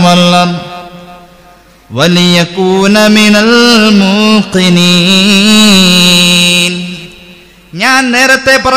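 A man's voice chanting a religious recitation in a slow, melodic, drawn-out style, with long held notes that waver in pitch. A phrase trails off just after the start. A second phrase lasts about five seconds, and a third begins at the very end.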